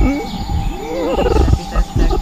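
A woman's voice making wordless vocal sounds that glide up and down in pitch. Low thumps sound underneath, one at the very start and another about a second and a half in.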